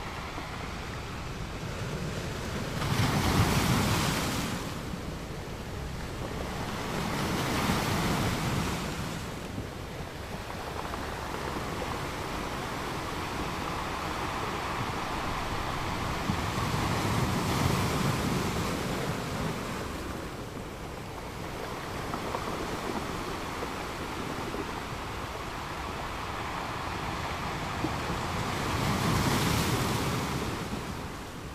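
Heavy ocean surf breaking on a beach: a steady wash of white water that swells four times as big waves break, the loudest about three seconds in.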